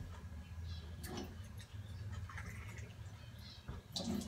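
Faint small clicks and taps of a bird water drinker being handled at a kitchen counter, over a low steady hum.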